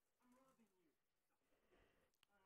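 Near silence, with a very faint voice murmuring briefly in the first half second.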